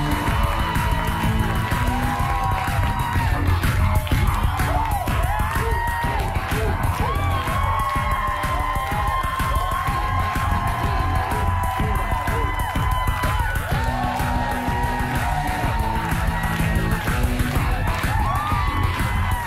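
Lively dance music with a steady beat, playing throughout.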